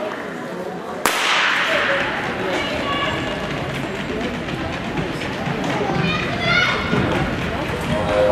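A starting pistol fires once about a second in, the crack ringing on in a large indoor hall, followed by voices shouting as the sprinters run.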